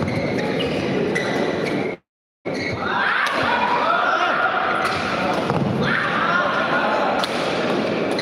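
Badminton play in a large indoor hall: sharp hits of rackets on the shuttlecock and thuds of players' feet on the court, over continuous crowd voices and calls. The sound drops out completely for a moment about two seconds in.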